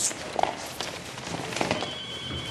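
Shuffling footsteps and scuffling movement of people struggling, with a few light knocks and faint voices. A faint steady high tone comes in near the end.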